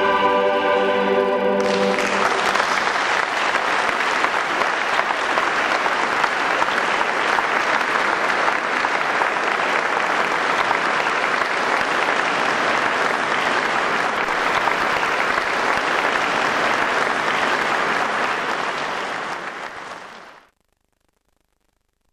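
A choir's final held chord ends within the first two seconds, then an audience applauds steadily. The applause fades out near the end and gives way to silence.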